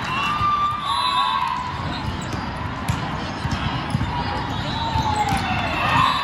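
Busy indoor volleyball tournament hall: a steady din of many voices with volleyballs being hit and bouncing on the courts, heard as many short knocks, and a short swell of noise near the end.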